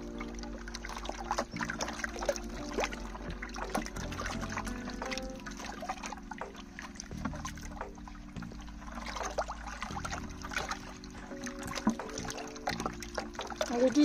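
A wooden spoon slowly stirring a thick slurry of compost in water in a plastic bucket: gentle, irregular sloshing and trickling with light knocks of the spoon. Soft background music with held chords plays under it.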